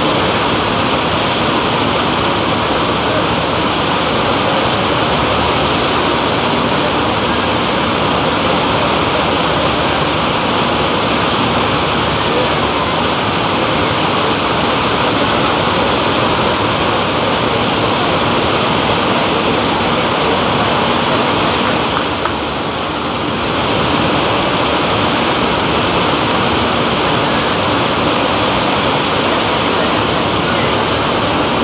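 Steady, loud rush of a thick sheet of water pumped up the ramp of an artificial surf-wave machine, easing briefly about three-quarters of the way through.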